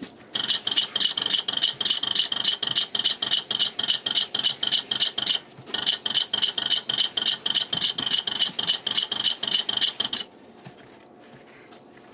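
Airless paint spray gun spraying: a steady high hiss with a rapid pulse, in two passes broken by a short pause about five and a half seconds in. The trigger is released about ten seconds in.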